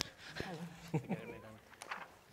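Faint, indistinct voices of a few people in a large room: short murmured words and vocal sounds, with a couple of small clicks.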